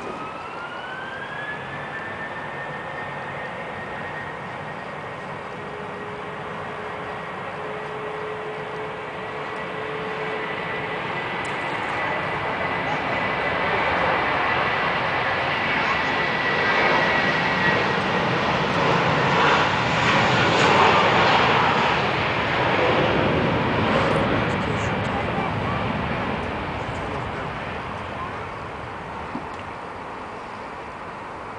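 British Airways Airbus A321-231's IAE V2500 turbofans at takeoff power. A jet whine rises in pitch at the start and then holds steady while the roar of the takeoff roll builds, is loudest about two-thirds of the way through, and then fades.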